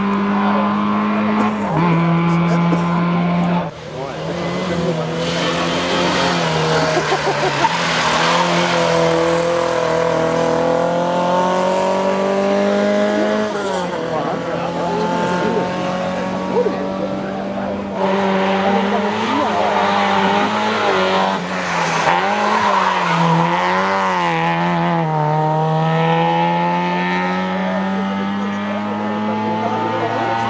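Rally car engine held at high revs, its note climbing slowly, dropping sharply about fourteen seconds in, then wavering up and down.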